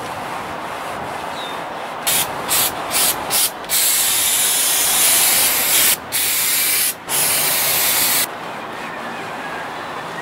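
Aerosol spray can being sprayed: four short hissing bursts about two seconds in, then longer sprays with two brief pauses, stopping about eight seconds in.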